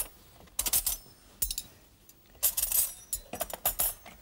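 Cutlery clinking against china plates in several short clusters of sharp clicks, with quiet gaps between.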